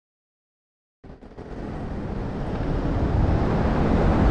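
Silence for about the first second, then road traffic noise fading in and growing louder, heavy with low rumble, with wind on the microphone.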